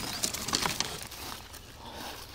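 A plywood coverboard being lifted off the ground, with the dry branches lying on it rattling and scraping, and several quick scrapes and snaps in the first second.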